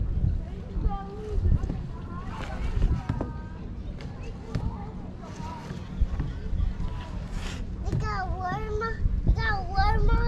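Background voices of people talking, some of them high-pitched like children's, over a steady low rumble.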